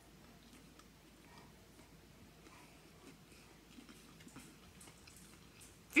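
Faint chewing of a mouthful of popcorn bound with melted marshmallow Peeps, with soft scattered crunches.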